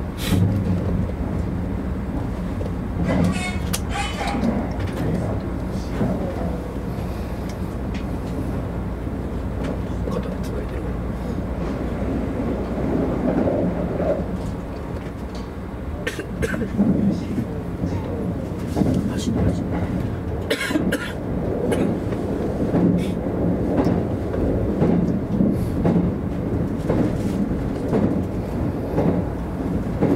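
Steady running rumble of a Kintetsu 50000 series Shimakaze electric limited express, heard inside the front observation car. Occasional sharp clicks come from the track, a few seconds in and again about two-thirds through.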